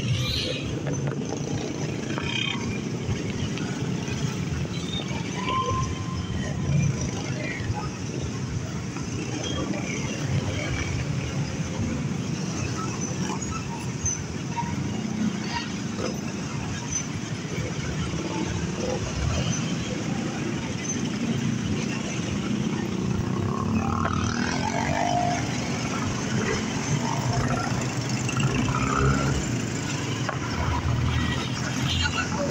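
Motorcycle running through city streets, its engine mixed with steady road and wind noise and passing traffic. The engine's pitch rises and falls a few times near the end.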